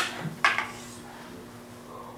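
A single short, sharp clack of wooden bokken (practice swords) meeting in a cut and block, about half a second in. After it there is only a low, steady room hum.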